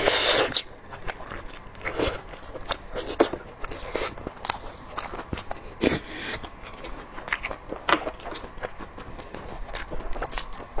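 Close-miked eating sounds of braised lamb shank: a loud bite and tear into the meat right at the start, then wet chewing and lip smacks in irregular clicks. About six seconds in there is a louder suck at the hollow shank bone.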